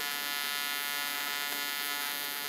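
AC TIG welding arc on quarter-inch aluminum from an Everlast PowerPro 205Si inverter welder, a steady buzzing hum with many even overtones at about 150 amps. The machine is maxed out and struggling a little bit.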